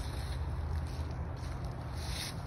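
Steady low rumble with no distinct event; no bow shot or arrow impact is heard.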